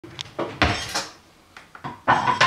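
A quick run of hard knocks and clinks, the loudest about half a second in, then a few lighter taps near the end.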